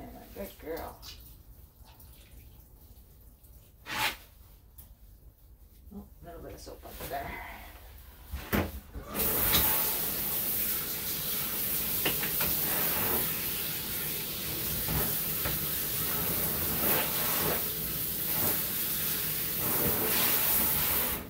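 Water from a handheld shower sprayer running into a bathtub while a wet puppy is rinsed, starting about nine seconds in and continuing steadily. Before it, a few sharp knocks.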